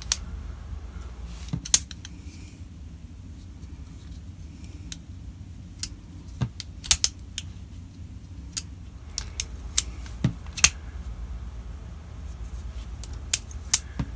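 Ozark Trail D2-steel folding knife with a plastic handle, handled and its blade worked open and shut: irregular sharp clicks from the slide lock and ball-bearing pivot, some in quick pairs. It is a slide lock whose spring doesn't always catch.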